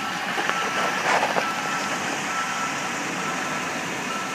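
A 2002 Dodge Stratus sedan running and rolling slowly forward and back, a steady running noise. Over it a single high electronic beep repeats about once a second, four times, and a short rustling noise comes about a second in.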